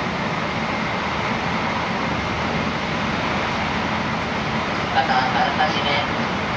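Steady running noise inside the passenger cabin of an N700A Shinkansen travelling at speed. About five seconds in, a melodic chime begins.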